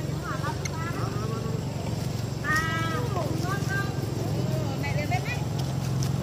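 Short, high-pitched squeaky calls that curve up and down, from the macaques. The loudest is a strong call about two and a half seconds in. Under them runs a steady low hum.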